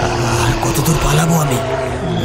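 Creature roaring sound effect, a deep snarl whose pitch bends up and down, over a low steady drone.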